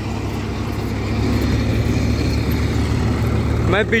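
Tractor engine running steadily under load, driving a tractor-mounted soil loader, with an even rush of loose soil pouring from the loader's chute into a steel trolley. A man's voice starts just before the end.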